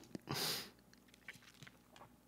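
A short breathy burst about half a second in, then faint small clicks and smacks of a person chewing food.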